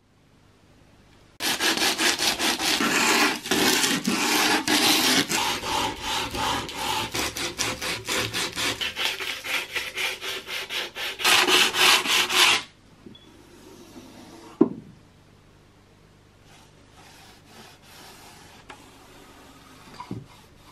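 Sandpaper rubbed by hand back and forth over the edge of a wooden sewing-machine case, in quick even strokes about four a second, which stop about two-thirds of the way through. Faint rubbing and a single sharp knock follow.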